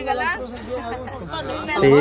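Several people chatting in Spanish, their voices overlapping.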